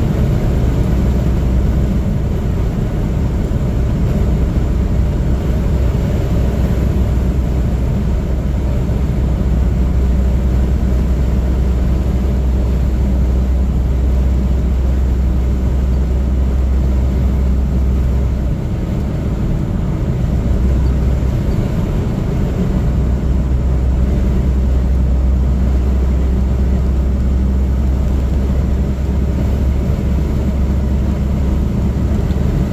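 Steady low drone of a car's engine and tyres on the road, heard from inside the cabin while driving at highway speed. The deep rumble eases for a few seconds past the middle, then returns.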